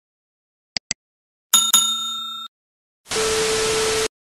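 Animation sound effects: two quick clicks, then a bell chiming twice and ringing out, then a burst of TV static with a steady tone in it that cuts off suddenly.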